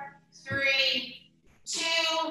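A woman singing in background music: two short phrases of held, steady notes, with faint accompaniment underneath.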